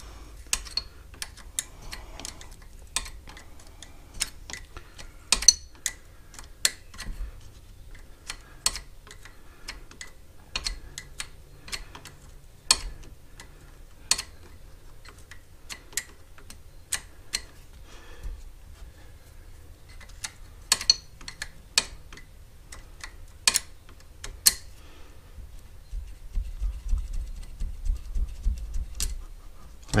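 Small spanner clicking and tapping on the metal nuts of a scooter switch's terminals as they are undone: sharp, irregular metallic clicks about one a second, with a low rumble near the end.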